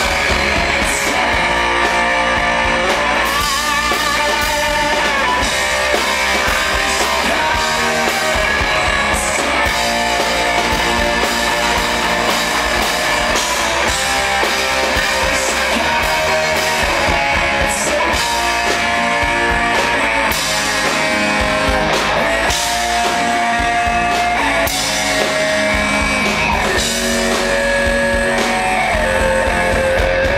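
A rock band playing live in concert, with electric guitar and drum kit, continuous and loud.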